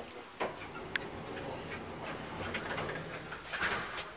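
1997 KONE Monospace machine-room-less traction elevator operating, heard from inside the car: a steady low mechanical rumble with a few sharp clicks, and a brief louder rush of noise near the end.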